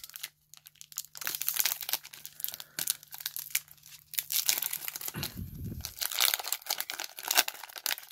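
A foil-wrapped Pokémon TCG Ultra Prism booster pack crinkling and tearing as it is ripped open by hand, in quick irregular rustles with a short lull just after the start.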